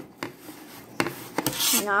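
Paper being rubbed and scraped against a paper plate: a few short scratchy strokes, then a brief hissy scrape near the end.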